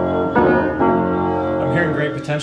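Unrestored Emerson upright piano from around 1890 played in chords, with fresh chords struck about a third of a second in and again just before one second. It sounds horrendous, the sign of its major regulation issues and missing strings, yet projects well.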